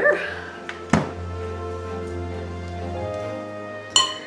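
Background music with soft held notes. About a second in, a single sharp click from the electric hand mixer as its flat beaters are released, and another short knock near the end.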